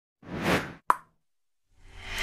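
Animated logo intro sound effects: a short whoosh that swells and fades, then a single sharp pop. Music begins to fade in near the end.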